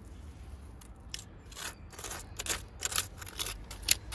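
Gloved fingers scraping and picking at gravel and grit around a stoneware bottle set in concrete. Short, irregular scrapes and clicks of stone begin about a second in.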